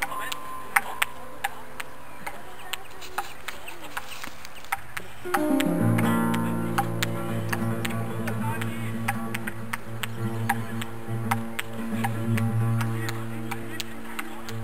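Table tennis balls clicking sharply off two paddles and the practice wall, a few irregular hits a second. About five seconds in, guitar music comes in over the clicks and is the louder sound from then on.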